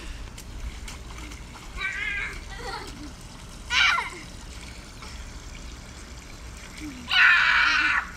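Boys wrestling on a wet slip 'n slide: water splashing, with short childish cries around two and four seconds in and a loud shout and laughter near the end.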